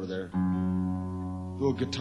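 A guitar chord plucked once, about a third of a second in, and left ringing as it slowly fades, with a man's talking just before and near the end.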